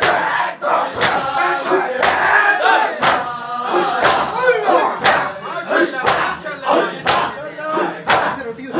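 A crowd of men beating their chests in unison in matam, a sharp slap about once a second, with loud massed men's voices between the strikes.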